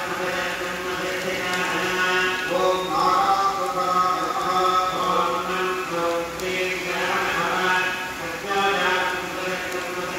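Hindu mantras chanted in a steady, sing-song recitation during a fire offering, in phrases of held notes that run on without a break.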